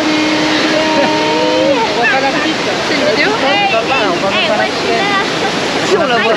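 Waterfall rushing steadily and loudly, with people's voices over it: a long held vocal note that rises at its end in the first two seconds, then lively, excited voices rising and falling in pitch.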